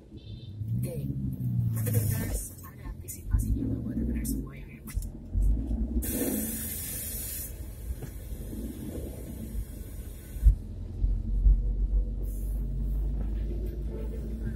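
Low steady rumble of a car driving, heard from inside the cabin, with indistinct voices talking over it.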